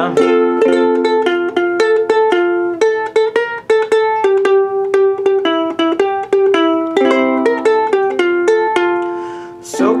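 Ukulele played alone in an instrumental break between sung verses: a quick, rhythmic run of strummed chords and picked notes. A voice comes back in singing right at the end.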